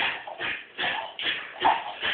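Jack Russell terrier's paws and claws scuffing on a hard kitchen floor as it runs and turns, in quick regular scrapes about two or three a second.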